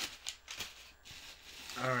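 A cardboard shipping box and its contents being handled: soft rustling with a few light clicks and scrapes in the first second and a half.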